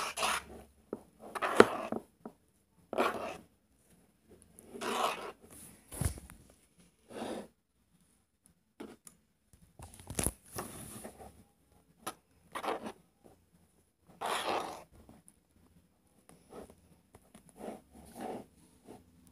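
A plastic spoon stirring and scraping thick, foamy slime in a plastic bowl, in separate strokes of about a second with short pauses between, as the Tide activator is worked in and the mixture thickens. A couple of sharp knocks, about six and ten seconds in.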